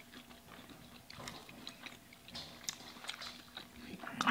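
Faint chewing of fried seafood, a scatter of soft mouth clicks and smacks.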